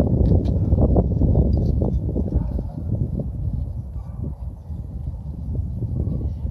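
Low rumble of close handling noise with a scatter of small knocks and clicks, as gloved hands work a nut and washers on a steel bolt. It is louder for the first two seconds, then quieter.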